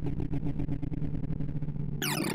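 Synthesized comparison tones from the ArrayV sorting visualizer running Slow Sort: a rapid, even stream of short, low-pitched beeps, many a second, each pitch set by the height of the bar being accessed.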